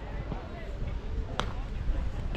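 A single sharp crack of a baseball striking something about one and a half seconds in, over steady low rumble and voices in the background.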